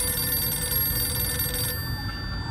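A telephone ringing: one long steady ring that stops shortly before the end.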